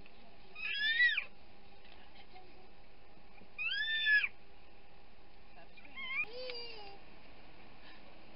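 A cat meowing three times, a few seconds apart, each call rising and falling in pitch, over the steady hum of an airliner cabin.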